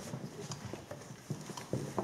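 A few faint, scattered light taps and knocks, like shuffling and handling.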